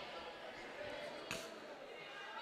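A single basketball bounce on a hardwood gym floor, a sharp smack a little past halfway through, over a faint murmur of crowd voices in the gym.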